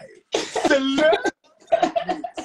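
A man's voice: one loud, drawn-out shout lasting about a second, greeting an introduction, followed by brief voice sounds near the end.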